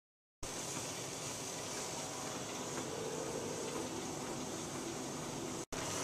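Treadmill running steadily under a walking test subject, an even mechanical hiss of belt and motor that starts about half a second in and cuts out for an instant near the end.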